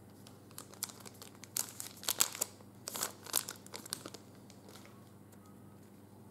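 A foil trading-card pack wrapper (2014 Panini Prizm) being torn open and crinkled, in a run of sharp bursts over about three and a half seconds, loudest in the middle.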